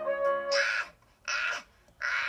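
A held musical note ends about half a second in. Then come two short, harsh, rasping bursts with no clear pitch, the second a little under a second after the first.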